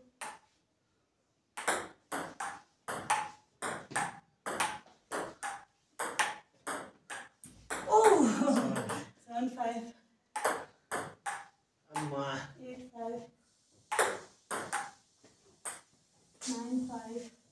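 Table tennis rally: a celluloid/plastic ping pong ball clicking off the table and rubber paddles, about two hits a second. Midway a voice cries out and the rally breaks, then hitting resumes with a few more strokes.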